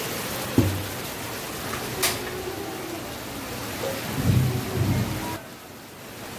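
Heavy rain falling steadily, with a low rumble of thunder around four seconds in and a sharp knock about half a second in. The rain sound cuts off suddenly shortly before the end.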